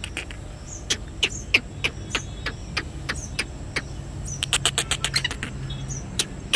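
Caged black francolin making short, sharp clicking notes, scattered singly at first and then in a quick run near the end, over a low steady hum.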